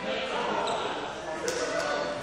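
Voices in a large, echoing indoor sports hall, with a couple of sharp knocks about one and a half seconds in.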